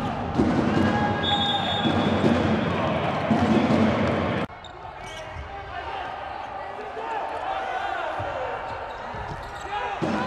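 Indoor volleyball rally: the ball is struck hard at the net amid voices and crowd noise in a large hall. About four and a half seconds in, the sound drops abruptly to a quieter stretch of voices and a few more ball hits.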